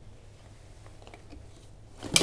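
Faint small clicks and rattles from a pram's metal frame being folded by hand, over a low steady hum.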